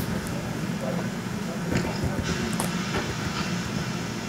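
Steady low rumbling noise with a faint hiss and a few soft clicks, with no voice.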